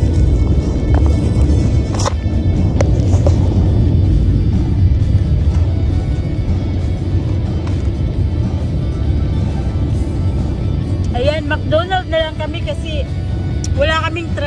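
Low rumble of road and engine noise inside a moving car's cabin, with music playing over it. A singing voice comes in about eleven seconds in.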